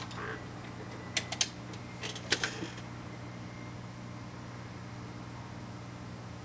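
A handful of sharp clicks and knocks in the first half, over the steady low hum of a running desktop computer.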